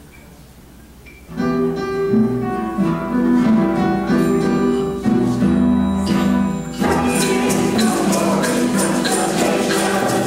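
A small church band starts an instrumental intro about a second in, with violin and guitar playing a melody over bass. About seven seconds in, shaken hand percussion such as tambourines joins in with a steady beat.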